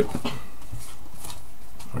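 Faint rustling and a few light clicks of trading cards and plastic binder sleeves being handled, over a steady low hum.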